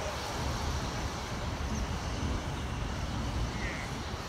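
Heavy tractor-trailer's diesel engine running low and steady as the rig creeps slowly through a turn, over general road traffic noise.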